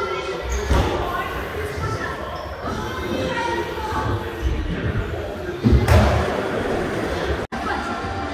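Skateboards rolling and thudding on wooden ramps in a large echoing hall, with a loud bang about six seconds in, mixed with children's voices.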